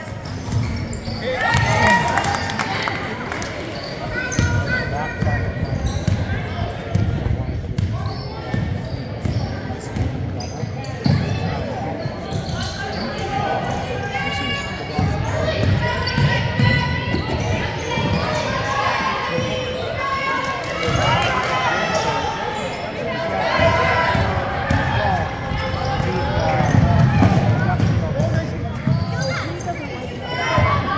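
A basketball bouncing on a hardwood gym floor during live play, with many voices of players and spectators calling and talking over one another, echoing in a large gym.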